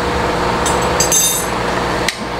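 A few sharp metallic clinks with a short ringing, about half a second to a second and a half in: a metal utensil knocking against a thin aluminium cooking pot. A steady low hum runs underneath.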